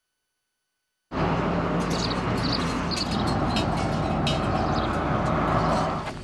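About a second of silence, then outdoor street background noise cuts in abruptly: a steady, loud rushing like passing traffic, with scattered light clicks on top.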